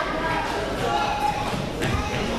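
Several voices talking in a large, echoing gym hall, with a soft thud near the end.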